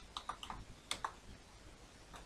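Computer keyboard typing: a quick run of keystrokes over the first second, the loudest two near the end of the run, then a few faint taps.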